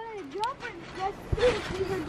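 Quiet talk and a short laugh, with one low thump a little over a second in.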